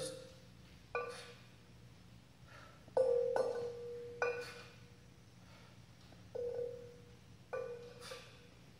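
Two kettlebells knocking against each other, each knock ringing on with a bell-like tone that dies away; about six knocks at uneven intervals.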